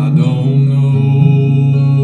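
Man singing a gospel song, holding one long note over strummed acoustic guitar.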